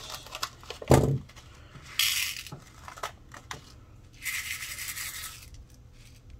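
A plastic packet of small glass flat-back rhinestones being handled and emptied: a sharp thump about a second in, then two rustling, crinkling bursts as the packet is torn open and the stones are tipped into a clear plastic tray.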